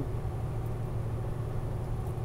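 Steady low rumble of road and engine noise inside a vehicle's cab while cruising at highway speed.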